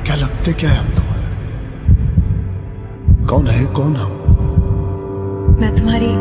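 Film soundtrack: a low throbbing pulse with a hum, broken three times by short rushing bursts of noise. Sustained music tones come in near the end.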